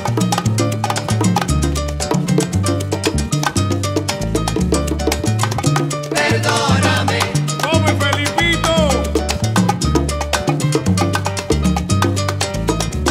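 Instrumental salsa band playing a busy, steady percussion groove over a repeating bass line. Near the middle, a pitched melody line with bending, sliding notes comes in over the rhythm.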